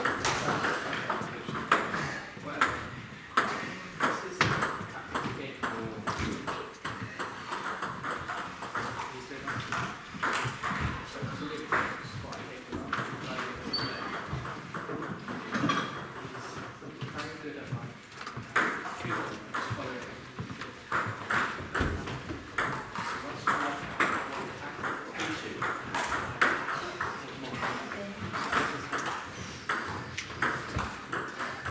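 Table tennis balls clicking, many irregular hits of ball on bat and table from several tables in play at once.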